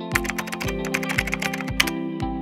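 Rapid computer-keyboard typing sound effect over background music with a steady beat of about two low thumps a second. The run of key clicks ends with one louder click near the end.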